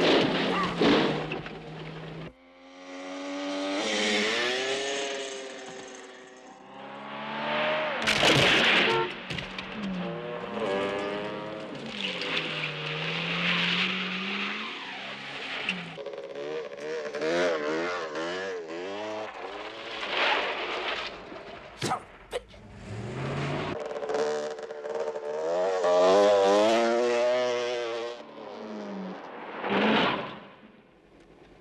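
Engines of a police car and a Yamaha XT250 single-cylinder dirt bike revving up and down in a chase, their pitch rising, falling and wavering quickly, with loud surges about a quarter of the way in and again near the end.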